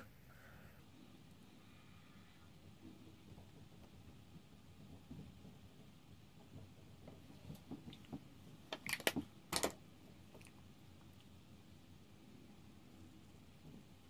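Quiet room with soft handling noises and a few sharp clicks in quick succession about two-thirds of the way in, from makeup products and a brush being handled.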